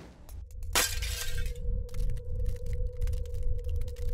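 A glass-shatter sound effect hits sharply under a second in. A low rumbling drone with a steady hum tone and scattered faint crackles follows, the music bed of an end-screen sting.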